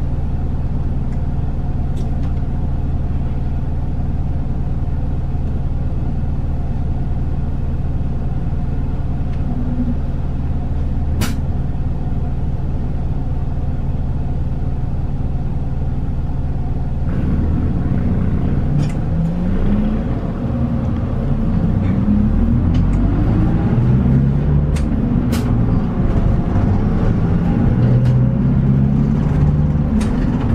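City bus engine heard from inside the cabin, idling steadily while stopped. About seventeen seconds in it pulls away and accelerates, its pitch rising in several steps through the gears.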